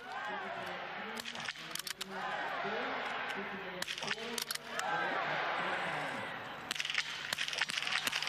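Several sharp shots at irregular intervals from small-bore .22 biathlon rifles fired prone on the shooting range. Background talking runs steadily beneath them.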